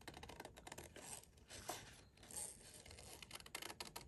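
Scissors cutting through a sheet of patterned paper: a run of faint, irregular snips with the paper rasping against the blades.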